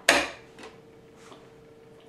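One sharp click from handling the sewing machine, fading within a fraction of a second. A faint steady hum and a few small handling noises follow.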